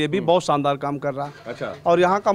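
A man speaking Hindi into a reporter's microphone, continuous conversational speech.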